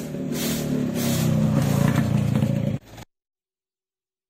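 A vehicle's engine passing along the street, growing louder, with a stick broom scraping over the pavement in repeated strokes. The sound cuts off abruptly about three seconds in.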